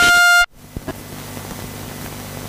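Race timing system's electronic horn over the PA: a loud steady tone that cuts off abruptly about half a second in, sounding the end of the race. A low steady hum continues underneath afterwards.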